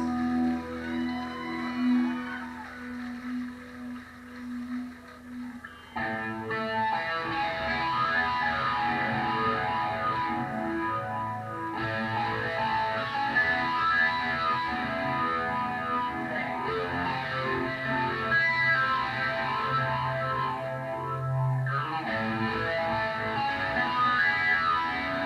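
Live rock band: electric guitars through effects pedals hold a low note with wavering swells for about six seconds, then the full band comes in suddenly with distorted guitars and bass playing on.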